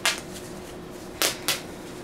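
Two short, sharp clicks about a quarter second apart over quiet room tone: plastic snaps on a cloth pocket diaper being handled and pulled open.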